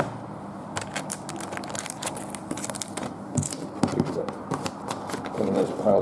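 Trading cards and foil card-pack wrappers being handled, rustling and crinkling in a string of irregular small crackles and taps.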